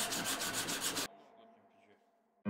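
A strip of abrasive sanding cloth pulled back and forth around a wooden knife handle, shoeshine style, in rapid, regular rasping strokes. It cuts off abruptly about halfway through.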